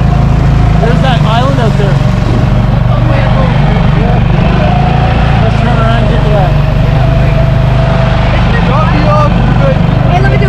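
Boat's outboard motor running steadily at speed, a constant low drone with a steady whine above it, and water rushing past the hull.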